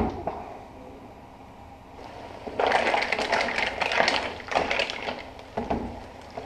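Cooked mussels in their shells clattering and rattling against the pan as they are stirred: a dense burst of shell-on-metal clatter lasting about two and a half seconds, starting about halfway through, with a shorter rattle near the end.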